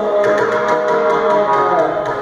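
Carnatic music: a male voice and violin in a gliding melody over a run of mridangam strokes.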